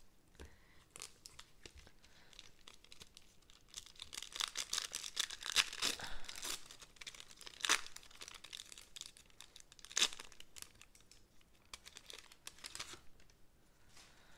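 Foil wrapper of a 1992 Upper Deck baseball card pack being torn open and crinkled, densest about four to six seconds in, with two sharp crackles around eight and ten seconds in.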